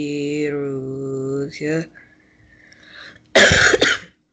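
A man reciting Quranic Arabic holds a long, steady chanted vowel, then gives a short follow-on syllable. About three and a half seconds in there is a loud cough.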